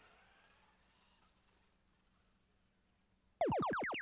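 A quiet stretch, then about three and a half seconds in a loud electronic sound effect from the robotics field's sound system: a quick run of downward-sliding tones lasting about a second. It signals the Boost power-up being activated.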